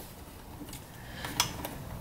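A few faint, light clicks of plastic steering-wheel parts and wiring being handled and fitted together, the loudest a little past halfway through.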